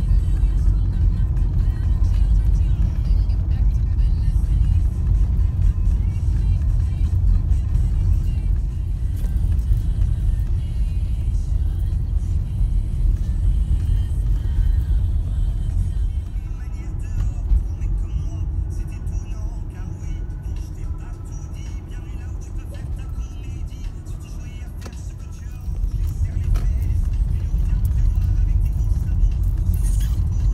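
Car road noise heard from inside the cabin while driving: a steady low rumble of engine and tyres. It sinks for several seconds past the middle, then jumps back up suddenly near the end.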